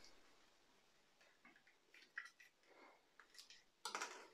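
Near silence with a few faint, scattered clicks and small handling noises, and a slightly louder click near the end.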